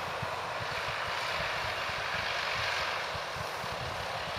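New Holland TS115 tractor's diesel engine running steadily as it drives across the field, a continuous engine drone with no sudden events.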